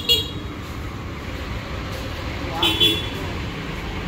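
Steady street traffic rumble, with a short vehicle-horn toot about two and a half seconds in.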